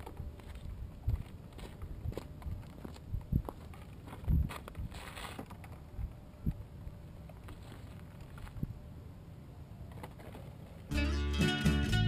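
Low wind rumble on the microphone with scattered knocks and a brief rustle. About eleven seconds in, strummed acoustic guitar music starts.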